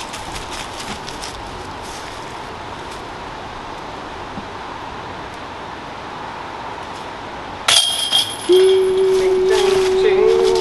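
A disc golf putt striking the metal basket: a sudden sharp clank with the chains ringing and jingling, about three-quarters of the way in. A single steady held note starts just after and carries on to the end.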